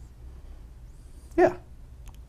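Quiet studio room tone with a low, steady hum, broken about one and a half seconds in by a man's single short "yeah."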